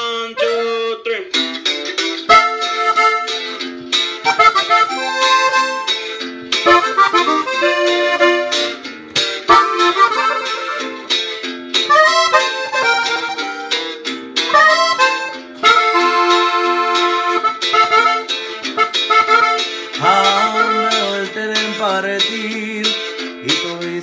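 Dino Baffetti button accordion played solo: a norteño melody in quick runs of treble notes with chords, without other instruments.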